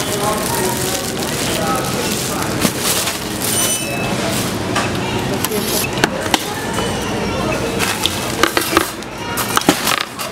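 Thin plastic shopping bags rustling and crinkling as they are handled, then a shrink-wrapped skateboard deck knocking against a wire shopping cart, with several sharp knocks near the end. A store's background of voices runs underneath.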